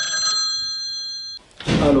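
Corded desk telephone ringing with one steady, high-pitched ring that cuts off suddenly about a second and a half in. A short handling noise follows as the receiver is lifted.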